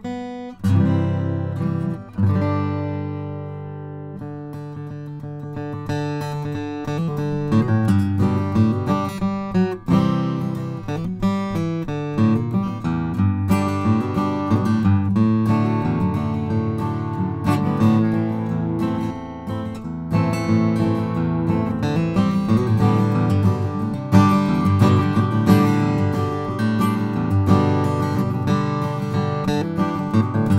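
Solo Goodall mahogany grand concert acoustic guitar, close-miked with a stereo pair of small-diaphragm condensers. A chord rings out and fades over the first few seconds, then a continuous passage of picked notes and chords carries on.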